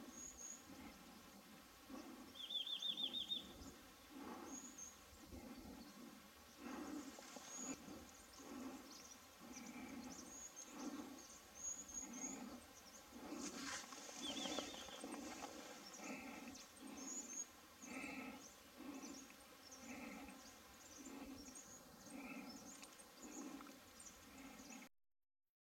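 Faint wild birdsong: thin high chirps from small birds throughout, with two short fast trills about three seconds in and again near fourteen seconds, the loudest sounds. Underneath, a low sound pulses about once a second.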